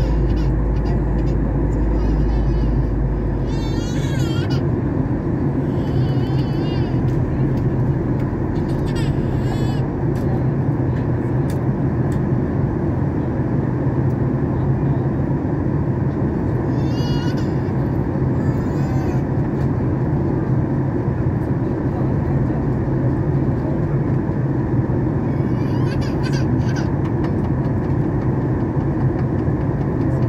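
Airliner cabin noise in flight: a loud, steady rush of engine and air noise with a deep low hum, its lowest rumble easing off about four seconds in.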